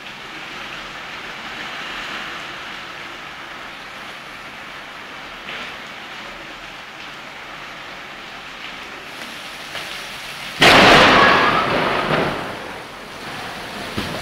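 Steady heavy rain falling on pavement during a thunderstorm, then about ten seconds in a sudden loud thunderclap that cracks and rumbles away over a couple of seconds, heard through a phone's microphone.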